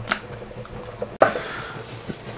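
Cooking pot handled on the stove: a brief scrape just after the start, then a sudden change about a second in to a steady faint hiss.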